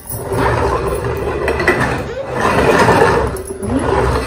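Plastic toy garbage truck pushed across a hardwood floor, its wheels and mechanism rumbling and rattling.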